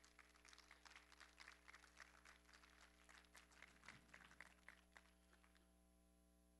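Near silence with faint, irregular soft taps, about three or four a second, that die away about five seconds in.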